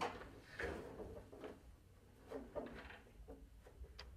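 Shuttle pulley of a Concept2 Dynamic RowErg being worked out of its rail by hand: a few soft scrapes and light knocks, spaced unevenly over the few seconds.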